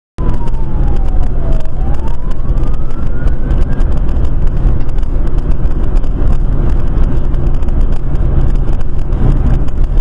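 Steady low rumble of a vehicle driving at speed, heard from inside the vehicle. Over it a siren's pitch falls and then rises once, fading out about four seconds in.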